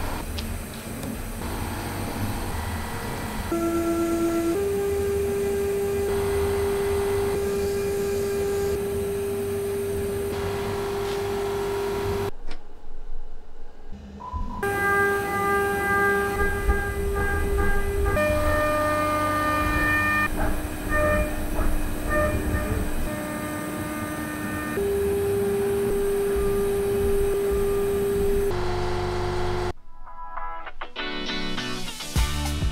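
CNC milling machine cutting a metal part: the end mill gives off a steady singing tone that jumps to a new pitch every few seconds as the cut changes, with a brief break about 13 seconds in.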